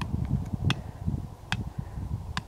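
Wind buffeting the microphone outdoors, a rough, gusty low rumble, with two sharp clicks about 0.8 s apart.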